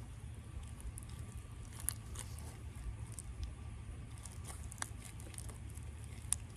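Slime mixed with sticky foam beads being stretched and squeezed by hand, giving faint scattered crackles and clicks over a steady low rumble.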